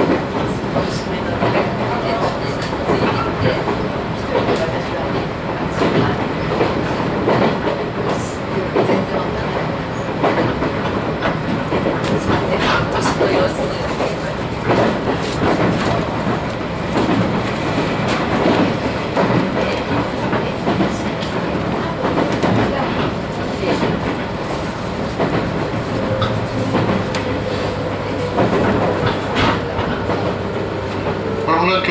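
Cabin of a JR East 719 series electric train running at speed: a steady rumble of wheels on rail with repeated clicks of the wheels over rail joints. A steady low hum joins in near the end.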